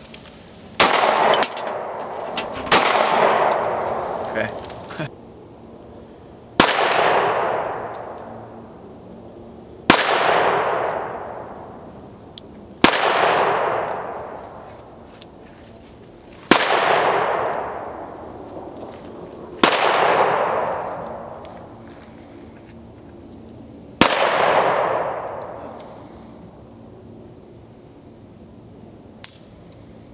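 About eight gunshots a few seconds apart, each followed by a long echo that rolls away over two to three seconds.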